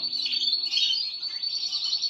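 Caged canaries and goldfinches singing: a continuous run of fast, high trills and chirps.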